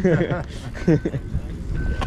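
Start-gate timing clock beeping, a short high beep about once a second, with voices and a low wind rumble.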